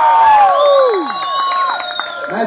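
Crowd cheering in answer to a 'make some noise' vote, with several long held whoops that drop in pitch and die away around a second in, a few lasting until near the end.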